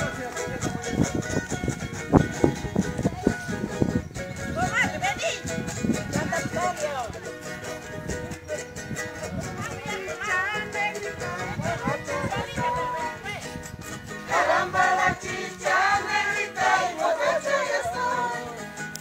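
Live carnival coplas: string instruments strummed in a steady rhythm, with voices singing over them, loudest in the last few seconds.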